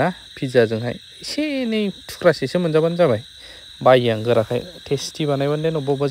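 A man's voice in long, drawn-out phrases with gliding, wavering pitch, in short breaks, over a faint steady high-pitched whine.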